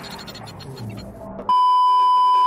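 A steady, loud electronic test-tone beep, the kind played over TV colour bars, cutting in suddenly about one and a half seconds in. Before it there is quieter mixed background sound.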